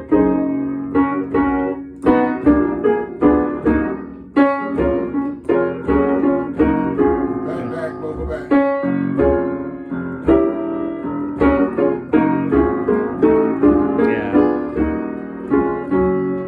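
Upright piano played in gospel style: a left-hand bass line under right-hand chords, struck in a steady rhythm.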